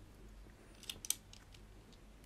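A few sharp plastic clicks about a second in as small hands fiddle with the lid of a hard black plastic container.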